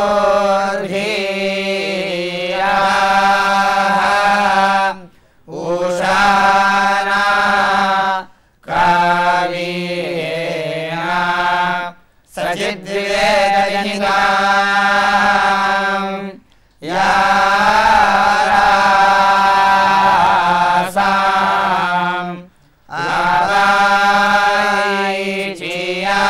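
A group of young men chanting Sanskrit Vedic verses together on a nearly steady pitch, in phrases of a few seconds each broken by short pauses.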